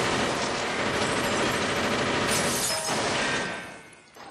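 A long burst of rapid gunfire that fades out near the end.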